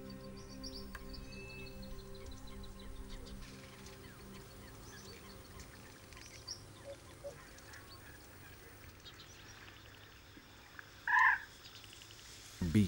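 Quiet marsh ambience with a few faint ticks, while soft steady music fades out over the first few seconds. Near the end, a bird gives one short, loud call.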